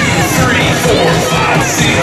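Children shouting and a crowd cheering over loud dance music.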